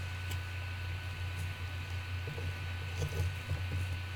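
Steady low hum with a few faint scrapes and light taps of a plastic palette knife scooping texture paste from a foam plate and smearing it onto the canvas.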